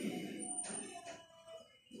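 A quiet pause: faint background noise with a couple of faint, brief tones, dropping to near silence about two-thirds of the way through.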